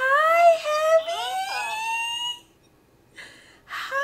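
A high-pitched voice squealing in a long, unbroken call that rises in pitch, then stops; a second squeal starts just before the end.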